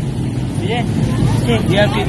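People talking in short snatches over a steady low rumble of outdoor street background noise.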